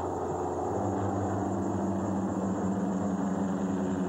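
Small propeller airplane's engine droning steadily overhead, its hum growing stronger a little under a second in.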